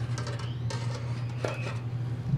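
Folded steel mesh lightly clinking and scraping against the block form as it is pushed into place by hand, a few faint clicks over a steady low hum.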